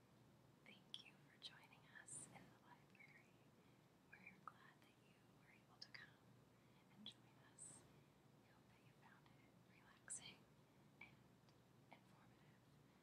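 A woman whispering, faint, with sharp hissing s-sounds between the breathy words.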